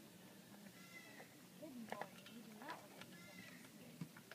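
Faint voices, with a few short pitched sounds that rise and fall, one of them sweeping up a little past the middle.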